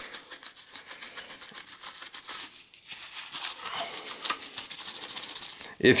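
Dry rubbing and rustling of a paper towel and gloved hands against a CPU heatsink's copper base, as old thermal compound is wiped off: a run of small, irregular scratchy strokes.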